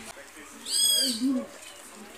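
A bird's single short, high-pitched call that rises and falls, about two-thirds of a second in, followed by two low hoot-like notes.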